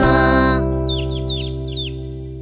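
A children's song ends: the last sung note stops about half a second in and the final chord rings on, slowly fading. Over it come four quick high peeps, each sliding downward, like chicks peeping.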